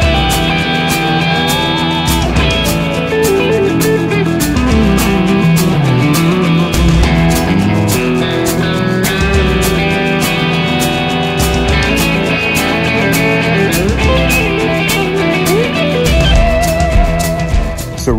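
Heritage H-150 electric guitar with humbucking pickups, played through an amp: a bluesy rock riff with notes that slide and bend in pitch, over a steady beat.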